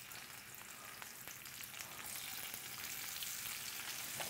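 Raw shrimp sizzling in hot oil and garlic in a nonstick skillet, with light crackling, the sizzle slowly growing louder as more shrimp go into the pan.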